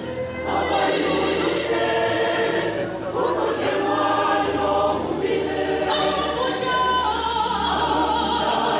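Church choir singing a gospel song, several voices together in harmony, swelling in louder about half a second in.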